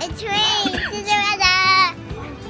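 A little girl's high-pitched voice in long, drawn-out squeals of delight: a wavering cry in the first second, then two long held notes.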